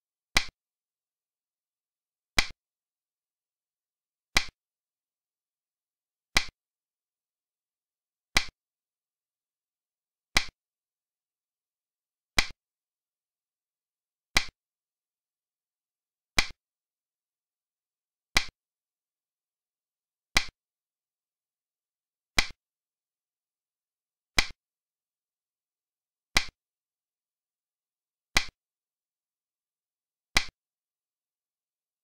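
Piece-move click sound effect of a digital xiangqi board, one sharp click about every two seconds as each move is played, with dead silence between.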